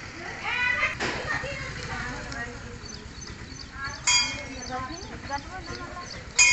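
Outdoor chatter of women's voices, with a loud, high call about four seconds in and a sharp click about a second in.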